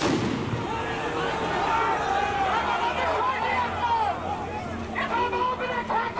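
A firecracker goes off on the street with a sharp bang at the start, followed by about a second of hiss, over a crowd of football ultras shouting and chanting.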